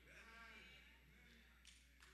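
Near silence: a low steady hum with a faint, wavering voice in the background.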